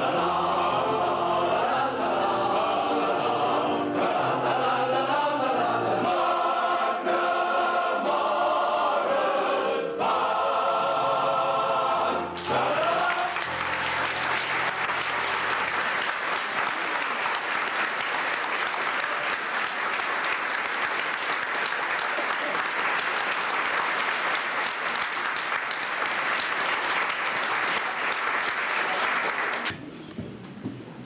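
Male voice choir singing in harmony, the song ending about twelve seconds in, followed by sustained audience applause.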